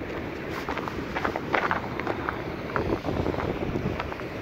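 Wind buffeting a chest-mounted camera's microphone: a steady rushing noise broken by irregular short crackles and rustles.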